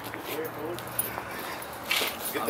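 Faint, brief speech in the background over outdoor ambience, with a light click a little after a second in.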